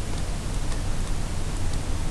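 Steady recording hiss with a low, constant hum underneath.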